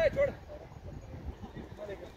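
A man's short shout, rising and falling in pitch right at the start, then a faint low rumble.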